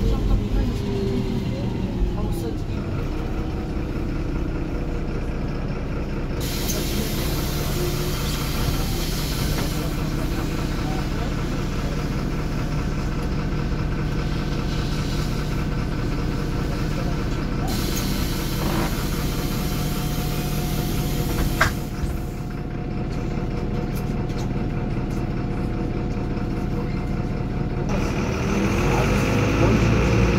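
MAN D0826 LUH12 inline-six turbo diesel of a 1998 MAN NL223 city bus heard from inside the cabin: the engine note falls as the bus slows, it idles at a stop with a long hiss in the middle and a sharp click, then the note rises near the end as the bus pulls away on its Voith automatic gearbox.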